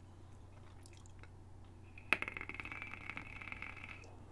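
Electronic cigarette firing during a draw. A click about two seconds in, then the heating coil's faint crackling sizzle with a steady airy hiss as the vapour is inhaled.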